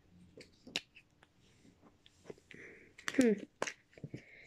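Scattered light clicks and crinkles of a Kinder Surprise egg being unwrapped and opened by hand: the foil wrapper, the chocolate shell and the plastic toy capsule.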